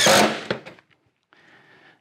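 Cordless drill driving a screw into plywood, its motor whine dropping slightly in pitch and fading out within the first second. Then a brief quiet stretch and a faint hiss.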